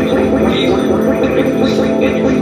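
Live experimental noise music from electronics and effects pedals: a dense, loud, unbroken wall of distorted sound over sustained low drone tones, with grainy, crackling texture on top.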